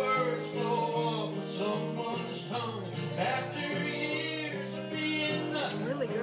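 Live country music: acoustic guitar with a singer, playing steadily.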